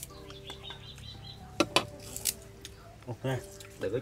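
Chopsticks and spoons clicking against ceramic porridge bowls as people eat: two sharp clicks close together about a second and a half in, and another soon after, over faint steady tones.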